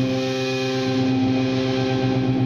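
Distorted electric guitar chord sustaining and ringing out steadily, played through an MXR Distortion III (M115) pedal into a Mesa Boogie Dual Rectifier amp.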